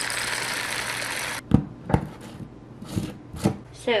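Dry, granular seasoning pouring from a bag into a plastic blender cup: a steady hiss that stops suddenly about a second and a half in. Then come a few light knocks.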